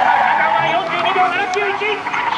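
Toyota GR86's 2.4-litre flat-four engine working hard as the car turns through the cones, under a louder announcer's voice.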